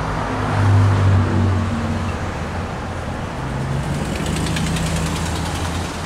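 Motor vehicle engine running nearby in street traffic: a low steady hum whose pitch shifts about halfway through.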